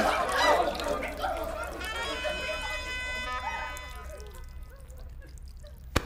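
Film soundtrack: a hubbub of voices fades out, then a single held musical note comes in about two seconds in and dies away after a couple of seconds.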